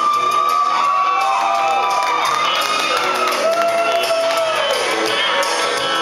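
Country karaoke backing music playing loud and steady, with long drawn-out whoops and cheering from the crowd overlapping at different pitches through most of it.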